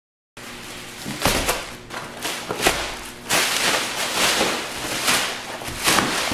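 Thin plastic wrapping crinkling and rustling in a series of irregular bursts as it is pulled and kicked off a folding foam gymnastics mat, with a few dull thuds.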